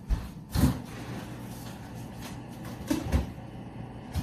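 A few dull knocks and thumps in a small kitchen, about half a second in and again about three seconds in: footsteps across the floor and the refrigerator door being opened.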